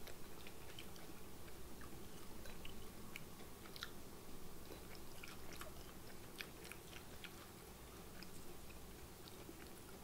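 Faint chewing of fried shrimp, with scattered small crunchy clicks.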